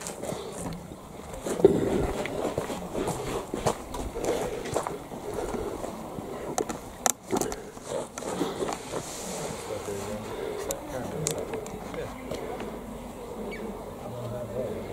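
Handling noise of a hand-held video camera being carried and set down: irregular knocks, bumps and rubbing on the microphone, with muffled voices in the background.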